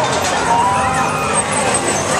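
Busy fairground din: a steady, loud machinery drone from rides and generators under a babble of crowd voices.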